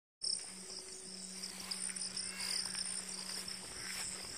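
Crickets and other insects trilling steadily in the weeds, a continuous high-pitched chorus, with a faint low steady hum underneath.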